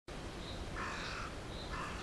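A raven calling twice, a longer call about a second in and a short one near the end, over a faint steady background of outdoor noise.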